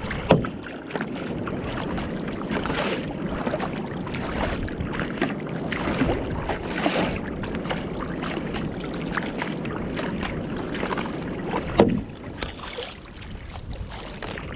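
Sea water splashing and lapping against the bow of a Fenn Bluefin-S surfski as it is paddled through light chop, with wind on the microphone. Two sharper slaps stand out, one just after the start and one near the end.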